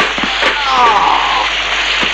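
Kung fu film fight sound effects: a sharp crack at the start and another about half a second in, then a drawn-out cry falling in pitch, over a steady hiss of pouring water.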